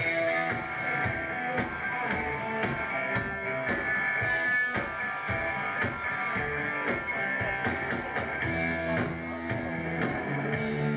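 Punk rock band playing live: distorted electric guitars and a drum kit with steady drum hits, the song under way straight after the spoken introduction.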